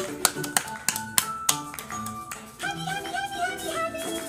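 Short bright music with held notes, with a quick run of sharp hand claps in the first second and a half.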